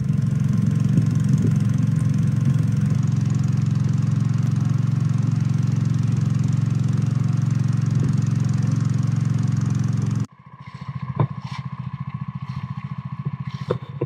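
Small wooden boat's motor running steadily and loudly. About ten seconds in it cuts abruptly to a quieter engine sound with a few sharp knocks.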